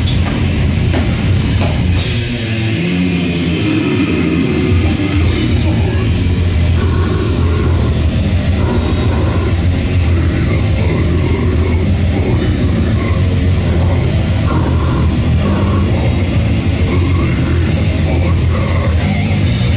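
Death metal band playing live and loud: distorted electric guitars, bass and drums together. About two and a half seconds in, the deepest bass drops out for a few seconds before the full band comes back in.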